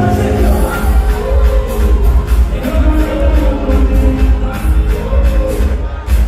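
Loud dance music with a heavy bass beat and a singing voice, played through a hall's sound system during a live stage show.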